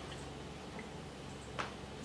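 Quiet room tone with a steady low hum and one short click about one and a half seconds in.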